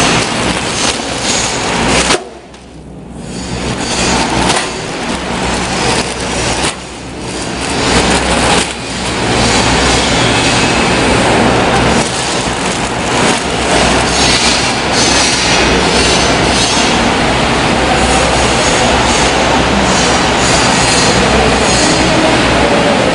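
Vegetable flow-wrap packing machine running, a steady mechanical clatter over a low hum. The loudness drops briefly a few times in the first several seconds, then holds even.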